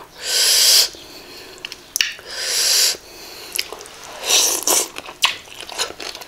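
Three loud, breathy puffs of air through pursed lips close to the microphone, each under a second and about two seconds apart, from a person chewing a mouthful of food, with faint mouth clicks between.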